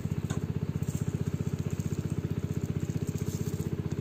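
An engine running steadily with an even, fast putter of about thirteen beats a second, with a faint knock of the hoe blade in the soil.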